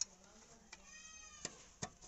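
Sharp metal clicks of hand tools and small parts being handled on an old electric iron: one at the very start and two more near the end. About a second in comes a short high-pitched call that falls slightly in pitch.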